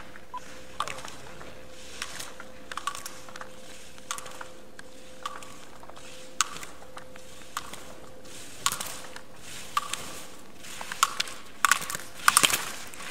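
Slalom gate poles being struck by a ski racer as she clears the gates, a sharp clack about once a second with the scrape of ski edges on snow between them, coming thicker and louder near the end. A faint steady hum runs underneath until about two-thirds of the way through.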